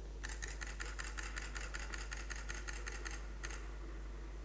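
Computer keyboard keys clicking in a fast, even run for about three seconds, then one more click, over a steady low electrical hum.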